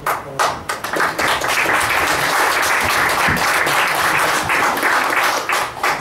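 Audience applauding: a few scattered claps at first, filling in within a second or two to steady applause that stops just before the end.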